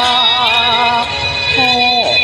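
A voice singing a Thai song over a karaoke backing track: a long held note with vibrato, then a short break and a new sung note near the end.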